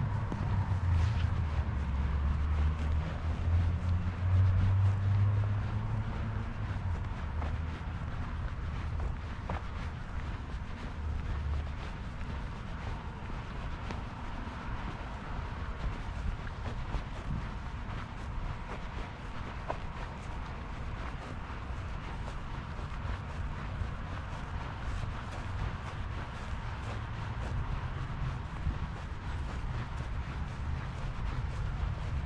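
Footsteps on grass while walking, under a low rumble that is loudest for the first twelve seconds or so and then fades.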